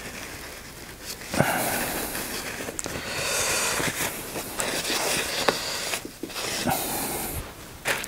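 Cloth rag rubbing and wiping inside a propeller hub: an uneven scrubbing noise that comes and goes, with a few light clicks.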